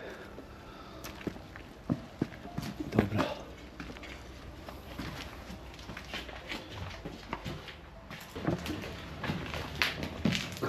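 Irregular footsteps on littered ground, with scattered sharp clicks, knocks and rustles of debris underfoot.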